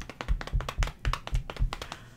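An improvised drumroll: hands drumming rapidly on a hard surface, about five heavy thumps a second with lighter taps between, stopping near the end.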